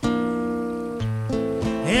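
Acoustic guitar strumming sustained chords, with a new chord struck about a second in. A male singing voice comes in on a rising note near the end.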